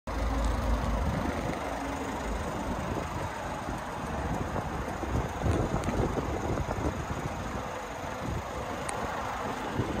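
Wind buffeting the microphone outdoors, over a steady low rumble, heaviest in the first second, with a few faint clicks.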